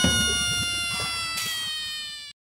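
Comic sound effect: one long ringing tone that sinks slowly in pitch and fades, following a short downward slide.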